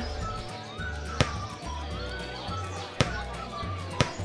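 Two sharp thumps of a football being kicked, about two seconds apart, over background music with a steady bass line and birds chirping.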